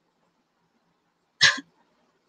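A woman's single short, sharp cough about one and a half seconds in.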